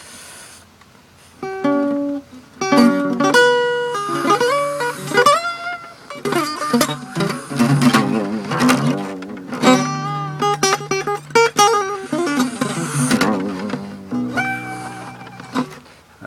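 Acoustic guitar played solo: quick single-note runs and arpeggios picked one note at a time, with a few wavering, bent notes in the middle, ending on a held chord.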